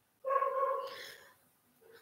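An animal's short whine: one steady high-pitched call lasting about a second, fading away.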